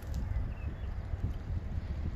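Wind buffeting the microphone on an open boat: an uneven low rumble with no distinct events.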